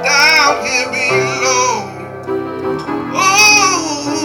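A man singing into a microphone while accompanying himself on a Kawai upright piano. His voice holds two wavering high notes, a short one at the start and a longer one past the middle, over sustained piano chords.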